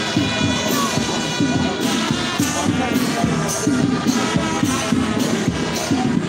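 Band music playing for a march past, with a steady beat, over crowd noise.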